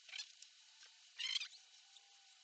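A cat moving about on carpet: a faint scuff near the start, then a louder brief rustle with a soft thud just after a second in.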